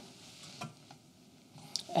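Quiet room tone with two faint clicks about half a second and a second in.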